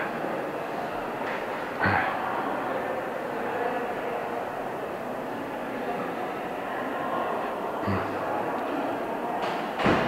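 Steady rumbling noise of a phone camera carried while walking along a hard marble-floored corridor. Brief louder sounds break in about two seconds in, near eight seconds and again at the end.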